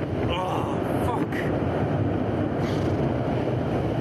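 Rushing air buffeting the microphone as the jumper falls and swings on the canyon swing rope, a steady low rush. Faint short cries come through it in the first second or so.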